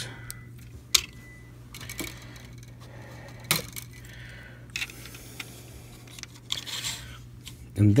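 Hard plastic armor pieces of an action figure clicking and knocking as shoulder panels are pulled off their pegs and handled, with sharp clicks about a second in and at about three and a half seconds, and lighter clicks in between.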